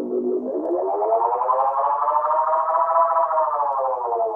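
Roland RE-201 Space Echo tape echo feeding back on itself into a sustained, self-oscillating tone, its pitch swept as the knobs are turned: it glides up from about half a second in, peaks near three seconds, then slides back down.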